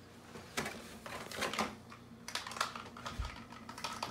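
Cardboard gift box being opened and handled: a few irregular clicks and scrapes of the cardboard lid and box, with a low thump a little after three seconds in.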